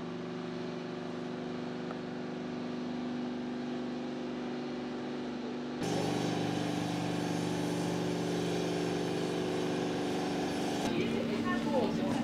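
Launch-pad machinery running with a steady, multi-toned mechanical hum as the Soyuz rocket is raised upright on its erector; the hum changes abruptly in pitch and loudness about six seconds in and again near the end, with faint voices in the background.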